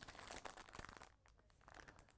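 Faint crinkling and light clicks of a small plastic packet being handled, then near silence after about a second.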